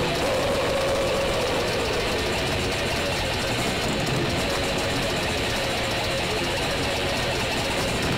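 Grindcore band playing live: heavily distorted electric guitars and drums in a dense, unbroken wall of sound, recorded loud from the crowd.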